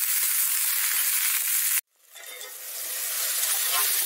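Pointed gourd (parwal) and chopped onion frying in oil in an iron kadhai, giving a steady sizzle. The sound cuts out abruptly a little under two seconds in and fades back up over the next second.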